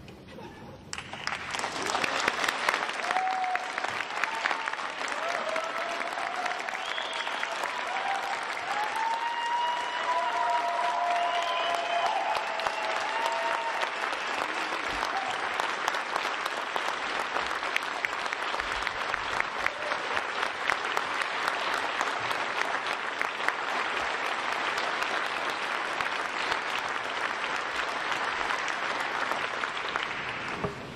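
Audience applauding steadily for nearly the whole stretch, starting about a second in, with a few voices calling out over it in the first half.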